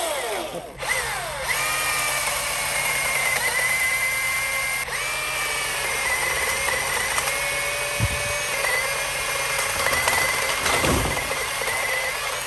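Milwaukee Fuel cordless electric chainsaw running at full speed and cutting through a tree limb: a steady high whine whose pitch sags a little each time the chain bites into the wood. Low thuds come about two-thirds of the way in and again near the end as the cut limb comes down.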